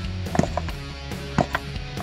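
A hammer lightly tapping a new seal into place in a Chrysler 727 automatic transmission: two sharp taps about a second apart. Background music plays underneath.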